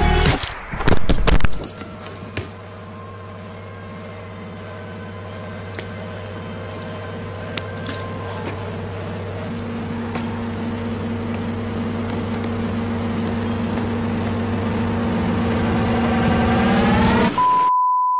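A burst of loud sudden sounds in the first two seconds, then a low, steady droning chord that swells slowly louder for about fifteen seconds, its upper tones bending upward just before it cuts off abruptly. A single steady test tone follows at the end.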